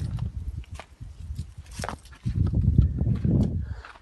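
Footsteps on dry soil and leaf litter: uneven low thuds, heaviest in the second half, with a few sharp crackles.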